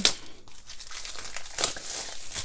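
Plastic packaging around a pack of paper cards rustling and crinkling as it is handled, with a sharp crackle right at the start.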